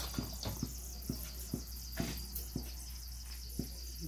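Hand mixing a thick rice-flour and gram-flour batter in a steel bowl: a string of short, irregular clicks and taps.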